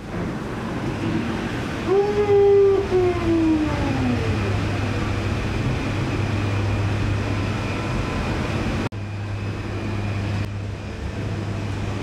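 POMA cable-car gondola running through a station on its drive wheels: a steady mechanical hum and rumble, with a whine that falls in pitch about two seconds in.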